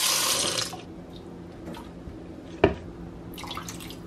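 Kitchen tap running into a ceramic bowl of blackberries in a stainless steel sink, cut off under a second in. Then quieter handling sounds, with one sharp knock about two and a half seconds in.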